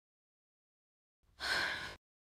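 Silence, then about one and a half seconds in a short breath from a woman's AI-generated voice, a breathy sound with no tone to it.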